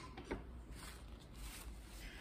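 Faint handling noises: a few light taps and rubs as a hand shifts a painted cotton cloth on its board across a table, over a low steady room hum.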